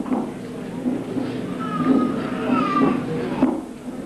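A high-pitched voice giving a few drawn-out, gliding calls, a little under a second apart, in a large hall.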